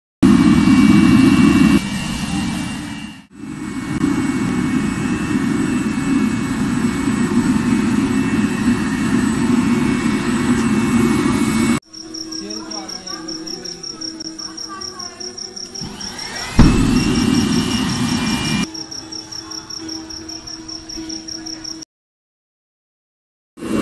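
Furnace burner for melting bronze, running with a steady roar, with a short dip about three seconds in. Near the middle it cuts to a quieter stretch with a high, rapidly pulsing tone and a low hum. A louder roar with a rising whine comes in about two-thirds of the way through.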